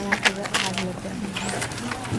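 Low, indistinct talk from a small group, with paper rustling and a short high bird chirp about one and a half seconds in.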